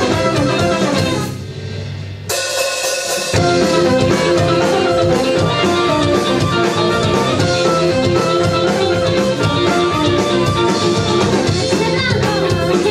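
Live band playing an upbeat rock song: electric guitars, bass, drum kit and keyboard, with a trumpet and trombone. The band drops out briefly about a second in, comes back in just after two seconds, and is back at full weight about three seconds in.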